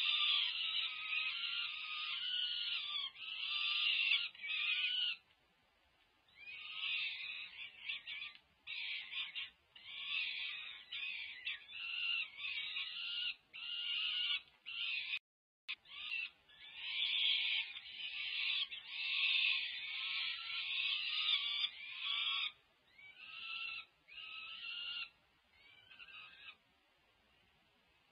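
Peregrine falcon chicks, about five weeks old, food-begging: harsh, wailing calls repeated one after another with short gaps. The calls pause for about a second and a half about five seconds in, then carry on until they die away near the end.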